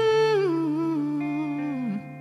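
Male singer's wordless hummed phrase, wavering and sliding down in pitch over about two seconds to a low note, over a held guitar chord.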